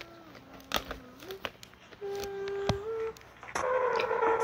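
A voice humming two long, steady notes, each stepping up in pitch at its end, with a few light clicks in between. The sound gets louder and busier near the end.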